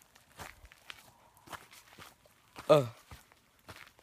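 Footsteps of a person walking, faint and about two steps a second, with one short voiced "ugh" a little past halfway, the loudest sound.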